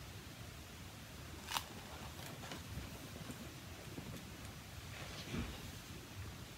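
Quiet room tone with soft handling sounds of a hardcover picture book being lowered and its page turned, and one sharp click about one and a half seconds in.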